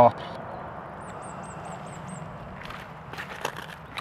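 Quiet outdoor ambience with a steady hiss. About a second in comes a faint, quick series of about seven high chirps. Near the end there are a few light crunches and clicks on gravel.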